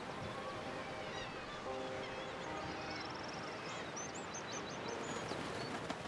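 Outdoor ambience: a steady background hiss with small birds chirping, short high calls through the first half and a quick run of very high chirps past the middle.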